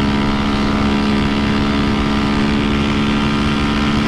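Honda CB300F Twister's single-cylinder engine, fitted with a tuned camshaft, held at high revs at full speed: a steady, unchanging drone, with wind rushing over the microphone.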